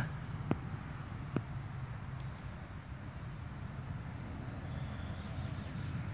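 Steady low rumble of outdoor background noise, with a few faint clicks in the first half.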